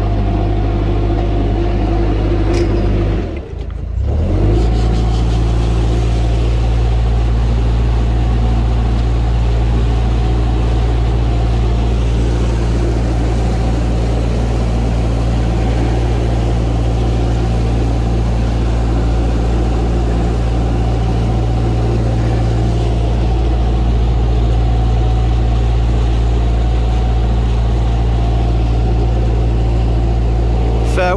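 Narrowboat's diesel engine running steadily under way, its note briefly dropping away about three seconds in before picking up again.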